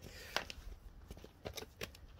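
A few sharp clicks and light knocks from handling things on the ground: one about a third of a second in, and two more close together near the end, over a faint low rumble.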